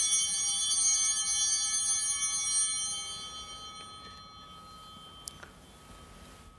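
Altar bells (Sanctus bells) rung at the elevation of the consecrated host, a bright ringing of several high tones that fades away over about four seconds. A couple of faint clicks near the end.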